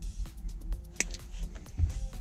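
A single sharp snip about a second in: the excess tail of a plastic zip tie being cut off, with a few small plastic clicks around it, over faint background music.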